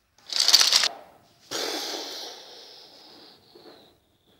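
A loud, short clatter of wooden toy train pieces crashing, then a sudden hissing rustle that slowly fades over about two seconds.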